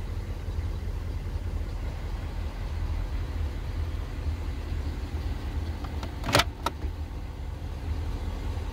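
Steady low rumble inside a 2018 Ford F-250 pickup's cabin, with two sharp clicks in quick succession about six seconds in, as a storage compartment's latch or lid is worked.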